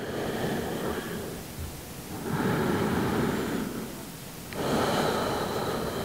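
A woman's slow, deep breathing: three long breaths, each lasting about one and a half to two seconds.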